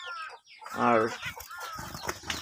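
Caged zebra finches giving short chirping calls, several in quick succession, with a brief flutter of wings near the end.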